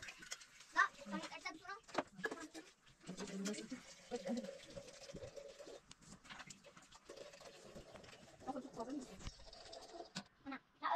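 Wordless vocal sounds from a person's voice: short wavering calls early on, then a couple of long held notes lasting about two seconds each.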